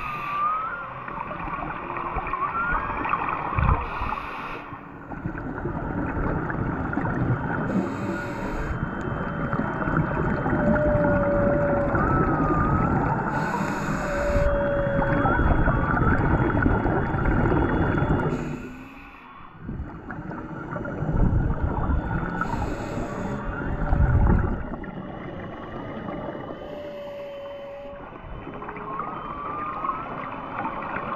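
Humpback whale song carried through the water: long level tones and short rising and falling calls, repeated throughout. Beneath it runs the bubbling wash of scuba breathing, with a short hiss every four to five seconds.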